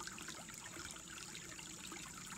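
Shallow creek trickling and gurgling over rocks, with katydids singing behind it as a steady high-pitched drone.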